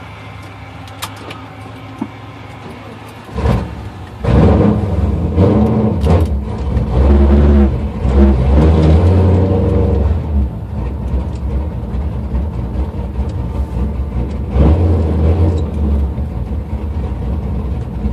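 A 2005 Pontiac GTO's LS2 V8, fitted with an aftermarket cam, heard from inside the cabin. It idles at first, is revved hard for about six seconds from about four seconds in, drops back to a lower steady run, and is revved briefly again about fourteen seconds in.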